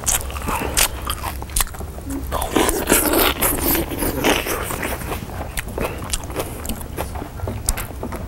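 Someone eating loudly close to the microphone: a rapid run of sharp crunches and chewing noises, thickest about halfway through.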